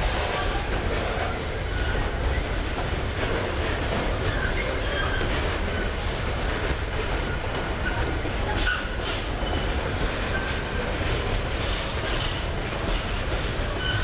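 Wagons of an intermodal container freight train rolling past, a steady rumble of steel wheels on rail. Brief high-pitched wheel squeals come and go throughout.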